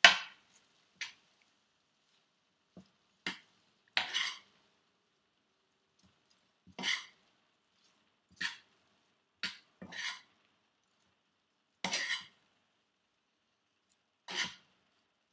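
Slotted spatula scraping and knocking against a skillet while tossing cooked rice with chicken and vegetables. About ten short, separate scrapes come irregularly a second or so apart, with the loudest right at the start and no steady sizzle between them.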